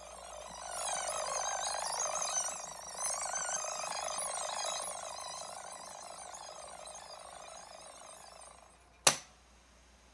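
Sanyo M 7800K boombox's radio giving out static with warbling whistles while it is tuned. The sound swells, holds, then fades away over several seconds. A single sharp click comes just before the end.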